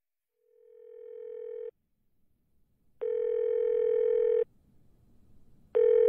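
Telephone ringing tone heard down the line by the caller: a buzzy steady tone in rings about a second and a half long, the first fading in, a second one in the middle and a third starting near the end. The call is ringing and has not yet been answered.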